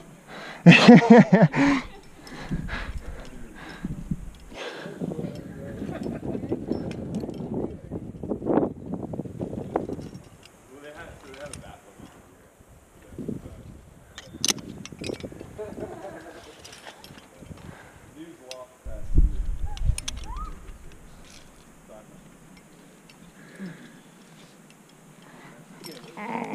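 A short laugh, then rustling and a rushing noise as the climber moves on the rock, with a few sharp metallic clicks about fourteen seconds in as a quickdraw's carabiner is clipped into a bolt hanger.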